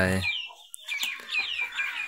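Chickens calling: a quick run of short, high, falling notes, several a second.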